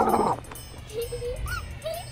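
An animated creature's vocal sound effects: a short, loud, harsh growl-like burst at the start, then several small squeaky calls that rise and fall in pitch.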